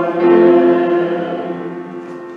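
Congregation singing sustained chords of the sung liturgy with keyboard accompaniment; the final chord is held and fades out near the end.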